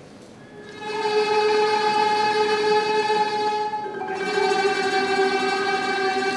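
Small mixed choir singing a cappella, holding long sustained chords that change about a second in and again near four seconds in.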